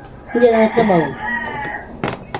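A rooster crowing once: one long call, about a second and a half, that rises and falls in pitch.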